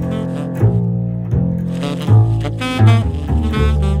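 Tenor saxophone and plucked upright double bass playing a jazz blues together. The bass keeps up a continuous line of low notes while the saxophone plays phrases that break off for about a second, starting roughly half a second in.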